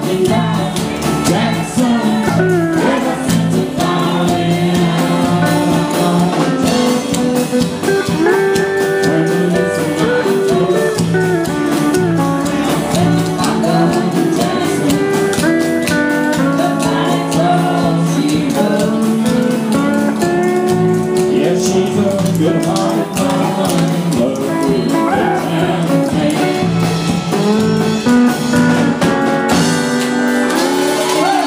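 Live country-style band music: strummed acoustic guitars, electric bass and drums with singing, playing steadily.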